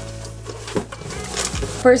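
Corrugated cardboard shipping box being handled as its flaps are opened: a sharp tap at the start, then a couple of faint scrapes, over steady soft background music.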